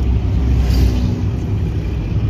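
Steady low rumble of a car driving on a highway, heard from inside the cabin.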